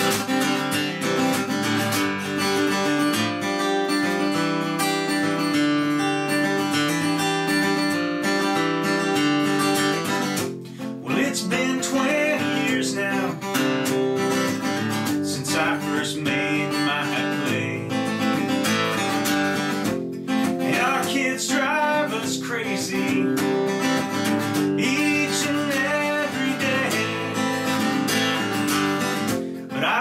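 Steel-string acoustic guitar strummed steadily as song accompaniment. After a brief dip about ten seconds in, a man's singing voice joins over the strumming.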